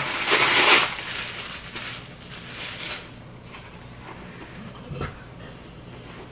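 Tissue paper and wrapping rustling as an item is pulled out and unwrapped, loudest in the first second, then irregular crinkling that dies down. A soft thump about five seconds in.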